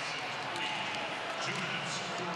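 Steady murmur of a large crowd in an indoor ice hockey arena during play.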